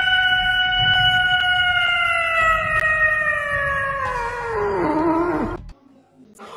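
A domestic cat's single long, drawn-out meow, held on a steady pitch, then sliding down in pitch and stopping near the end.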